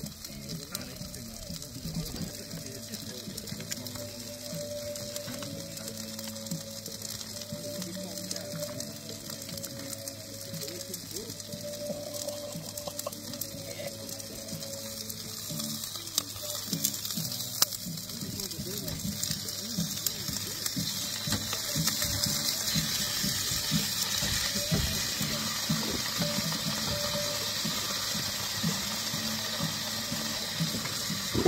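Food frying in a pan on a camp gas stove, a steady hiss that grows louder in the second half, with small knocks of utensils against the pan.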